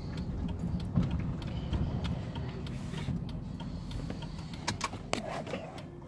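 Low, steady rumble of a car heard from inside its cabin, with a few light clicks and knocks scattered through.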